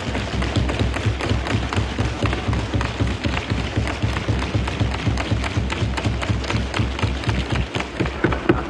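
Many members thumping their wooden desks with their hands in a fast, dense patter, a loud welcome or show of approval in the assembly chamber.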